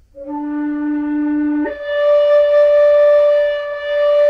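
Hybrid flute (Red Kite Philharmonic Native American-style mouthpiece on a Guo New Voice composite flute body) plays a held low note, then about a second and a half in jumps up an octave to a longer, louder held note. It is the step from the first octave into the second, blown harder.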